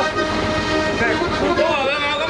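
Diatonic button accordion playing sustained notes, with people's voices over it.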